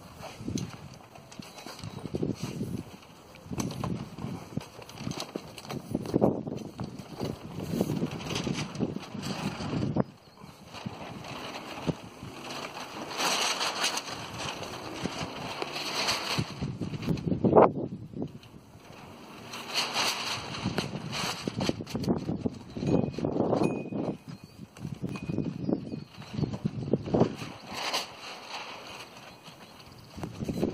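Gusty wind buffeting the microphone, with a Tyvek sail flapping and rustling in irregular bursts.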